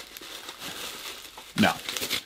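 Plastic bubble wrap crinkling as it is handled and pulled off a boxed vinyl figure, a soft, irregular crackle.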